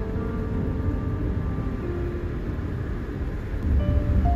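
A car being driven, heard from inside the cabin: a steady low rumble of road and engine noise, with faint background music.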